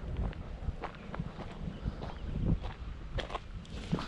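Footsteps of a person walking on a gravel and dirt path, an uneven series of crunching steps.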